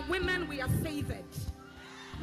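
Live gospel band between phrases: a held keyboard chord fades while a high, fast-wavering voice runs over it in the first second. A few low drum hits follow, then the music drops quieter near the end.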